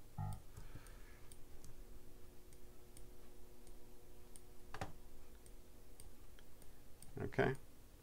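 Computer mouse clicking: faint ticks scattered throughout and one sharper click about five seconds in, over a faint steady hum.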